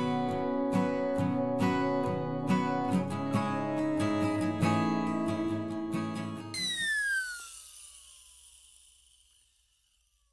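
Background music on acoustic guitar, plucked in an even rhythm, which stops about two-thirds of the way in. A falling sweep with a hiss follows and fades away to silence.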